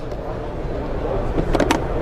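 Steady background din of a crowded hall, with a quick cluster of sharp clicks about a second and a half in as the plastic lid and carry handle of a Thermo Scientific Niton FXL portable XRF analyzer are handled.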